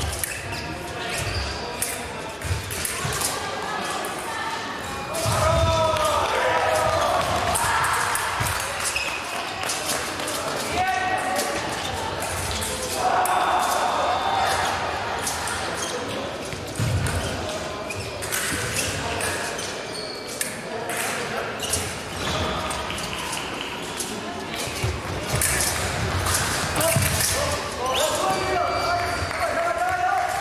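Fencing bout in a large, echoing hall: quick footwork taps and stamps on the piste and sharp blade clicks and knocks throughout. Raised voices come in several times, about six, thirteen and twenty-eight seconds in.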